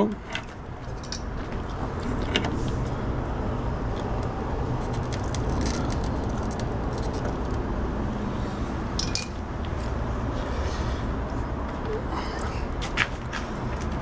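Light, scattered clicks and taps of wires and small tools being handled over a TV's open metal chassis, above a steady low rushing background noise.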